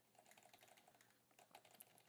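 Faint computer keyboard typing: two quick runs of keystrokes, one in the first second and another in the last half second.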